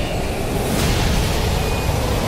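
Movie soundtrack from an aircraft action scene: a steady, dense roar of wind and aircraft engine noise with a heavy low rumble.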